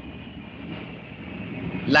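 Steady low background hiss and hum from the lecturer's microphone during a pause in speech; a man's voice starts again right at the end.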